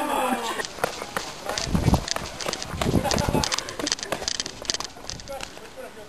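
Laughter trailing off, then irregular crackling and clicking with two short low rumbles.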